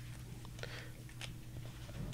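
Quiet room tone: a steady low hum with a few faint soft clicks and rustles.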